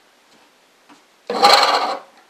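Pencil scribing a circle onto a wooden disc as it turns on the lathe: a short, loud, scratchy rub lasting under a second near the end.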